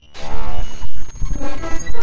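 Sound design for an animated logo: a loud, dense layering of synthetic hits and short tones, each timed to a motion of the animation. It starts abruptly after a short silence.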